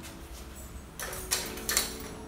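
A short rustling clatter about a second in, with two sharp clicks, like a door or latch being handled.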